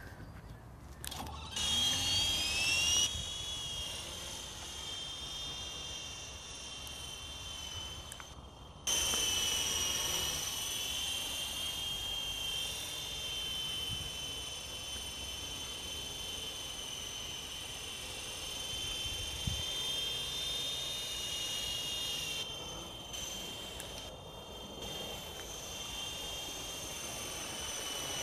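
Small radio-controlled model helicopter's motor and rotor spooling up with a rising whine about two seconds in, then a steady high-pitched whine that wavers slightly as it flies, broken off briefly a few times.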